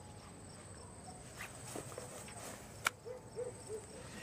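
Quiet night ambience with faint crickets chirping at an even pace. A few small clicks sound through it, with one sharp click about three seconds in.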